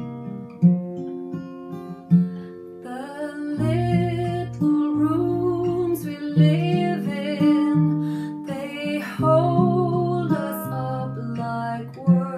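A woman singing a slow song, accompanied by a Gibson acoustic guitar. The guitar plays alone for about the first three seconds, then her voice comes in, wavering on its held notes.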